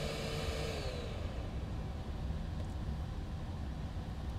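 Steady low background hum, with a faint steady whine that drops in pitch and dies away about a second in.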